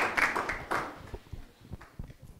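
Audience applause dying away within the first second, then quiet.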